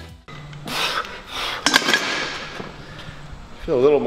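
Heavy music cuts off right at the start, leaving a man's voice in a room: indistinct vocal sounds, a few sharp clicks about halfway through, then a drawn-out, wavering vocal sound near the end.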